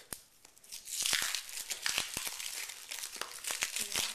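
Foil wrapper of a trading-card pack being torn open and crinkled: a few light clicks at first, then continuous crackling and tearing from about a second in.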